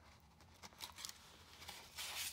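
Faint rustling and a few light ticks of paper and card being handled as a journal page is turned and a card slid from its pocket.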